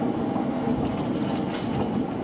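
Rubber-tyred New Tram automated guideway train running steadily through a tunnel, with faint ticks over the track.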